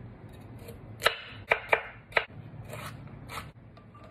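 Chef's knife chopping radishes on a wooden cutting board: irregular sharp knocks of the blade on the board, four strong ones close together around the middle with softer cuts after.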